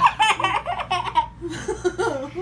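Laughter in quick bursts, loudest in the first second, with a brief lull before it picks up again near the end.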